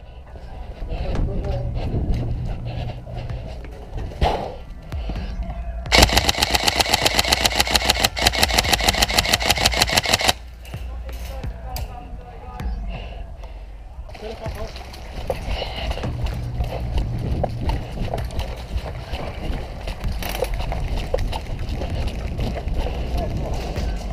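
Airsoft MK18 rifle firing one long full-auto burst of about four seconds, a fast, even clatter of shots starting about six seconds in. Before and after it there is quieter, irregular rustle and movement.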